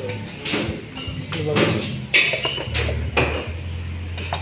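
Sharp clinks and knocks of dishes and utensils, several within a few seconds, the loudest about two seconds in. Low murmured voices and a steady low hum run underneath.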